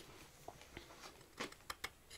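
Knife blade scraping and picking at a small block of wood: a few faint, sharp scratches and ticks, most of them in the second half.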